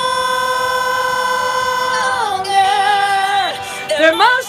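A woman singing into a handheld karaoke microphone. She holds one long high note for about two seconds, then drops to a lower held note that fades out near the end.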